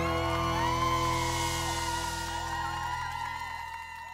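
A rock band's final chord on electric guitar and bass rings out with the cymbal wash dying away, the sound slowly fading. Over it the audience whoops and cheers.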